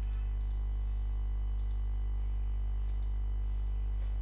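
Steady electrical mains hum in the recording, a strong low drone with a thin high-pitched whine above it, unchanging throughout. A few faint mouse clicks sound over it.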